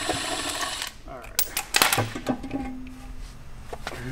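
Cordless electric ratchet running for about a second, spinning out an oil pan bolt, followed by a few sharp metallic knocks.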